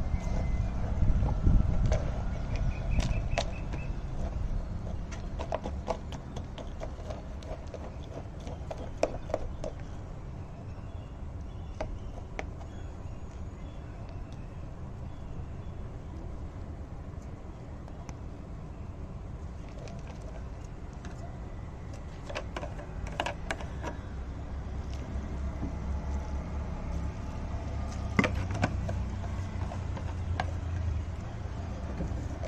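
Hands mixing and crumbling dry, clumpy potting soil with pieces of banana peel: scattered crackles and rustles over a low rumble.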